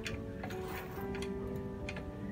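A few sharp clicks from a computer keyboard and mouse, over background music with held, steady notes.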